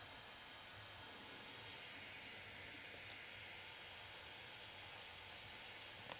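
Faint, steady hiss of background noise with no distinct sound events, apart from one small tick about three seconds in.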